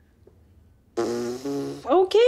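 A loud fart, a buzzing, steady-pitched blast about a second in that breaks once partway and lasts just under a second, after near silence.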